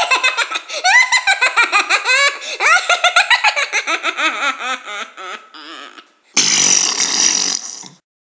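High-pitched cartoon character's voice laughing a long gloating laugh in rapid bursts that trail off, then one loud raspy burst near the end.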